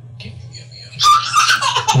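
A baby's high-pitched laughing squeal, starting about a second in after a short lull.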